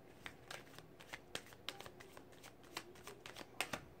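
A deck of message cards being shuffled by hand: an irregular run of soft card flicks and slaps, the sharpest one a little before the end.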